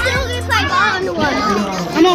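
Children's voices over background music with a sustained bass line.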